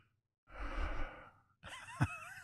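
A man sighing, one breathy exhale into a close microphone lasting under a second, starting about half a second in. Near the end his voice faintly begins.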